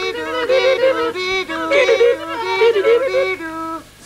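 Cartoon soundtrack music: high voices singing a quick, bouncing wordless tune in short hopping notes, like yodelling. It breaks off near the end.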